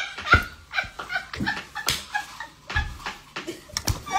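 A person laughing hard in short, gasping, breathless bursts, with several knocks and bumps as the phone is jostled.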